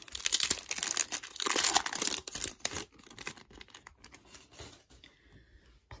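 Foil wrapper of a 2007 Bowman Chrome football card pack being torn open and crinkled, loud for about the first three seconds. After that come fainter rustles and light clicks as the cards are slid out and handled.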